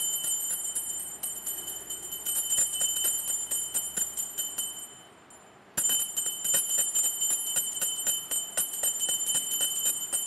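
Brass puja hand bell (ghanta) rung rapidly and continuously with a high, bright ring. It fades out about halfway through, falls quiet for about a second, then starts again abruptly.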